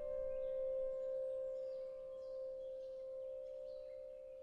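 Background piano music: a single held note rings on and slowly fades away.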